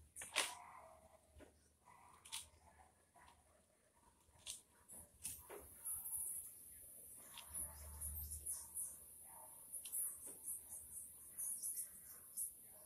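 Faint rustling and scattered small clicks and knocks of hands working potting mix into a small plastic plant pot, with a sharper knock about half a second in.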